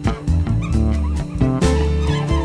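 Background music with a steady beat and bass line, with a few short sliding high notes about half a second in.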